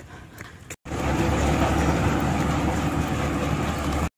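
Loud, steady rumble of heavy dump trucks running on a dirt road, starting suddenly after a short gap a little under a second in.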